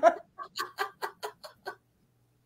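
A woman laughing in a quick run of short, staccato bursts, about six a second, growing fainter and stopping after under two seconds.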